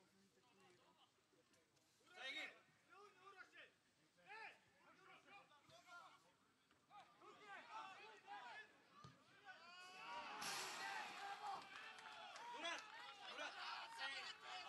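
Faint, distant voices calling out and chatting, with several people at once from about ten seconds in.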